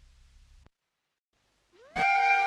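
Silent gap between two songs of a folk-music album. Near the end a short rising pitch glide comes in as the next song's melody starts.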